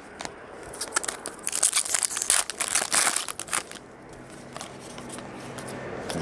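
Foil wrapper of a baseball card pack crinkling as it is torn open: a run of crackly rustles lasting about three seconds, then quieter handling.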